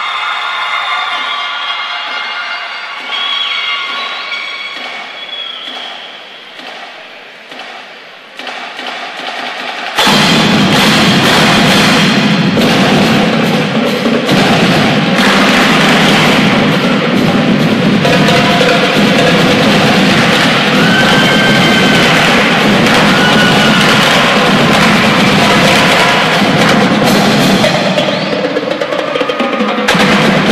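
School marching band playing: a quieter opening, then about ten seconds in the full band comes in loud, with brass and a drum line.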